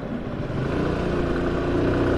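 The small engine of the rider's own two-wheeler accelerating, its note rising slowly in pitch and getting louder, with road noise underneath.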